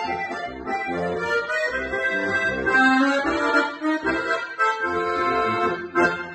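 Diatonic button accordion playing a polka melody over a regular pulsing bass-and-chord accompaniment.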